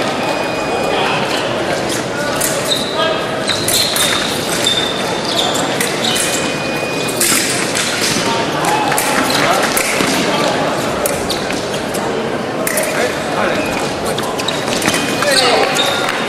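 Busy fencing hall during a foil bout: fencers' feet stamping and shoes squeaking on the piste, with sharp clicks of blades, over overlapping voices echoing in a large hall.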